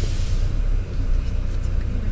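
Steady low rumble of a vehicle moving along a street, with a short burst of hiss right at the start.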